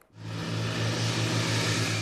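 Diesel engine of a snow-clearing loader running steadily with a low, even hum, cutting in suddenly just after the start.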